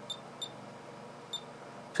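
Three short, high electronic key-press beeps from a Sainsmart DSO Note II pocket oscilloscope as its buttons are pressed to step through the channel menu and switch the input coupling from AC to DC.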